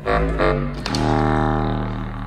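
Live chamber-ensemble music: a short note at the start, then a low reed note held steadily from about a second in, played on a contrabass clarinet.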